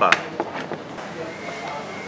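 A sharp knock on the tabletop right at the start, followed by a few faint knocks and handling noises as the takeaway food boxes are moved about.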